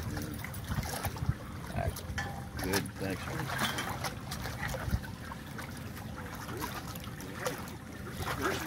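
Water sloshing and lapping around a tarpon held in the water at the foot of concrete seawall steps while it is revived for release, with a few short splashes.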